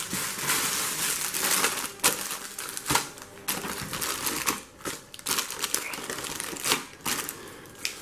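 Clear plastic bags holding styrene model-kit sprues and rubber wheels crinkling as they are handled and packed into a cardboard box, with a few sharp knocks.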